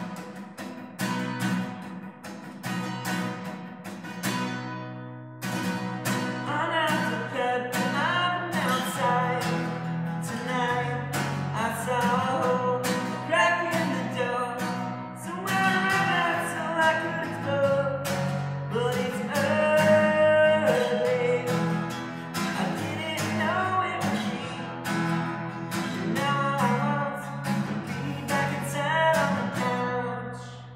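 Acoustic guitar strummed in a steady rhythm, with a man singing over it from about six seconds in.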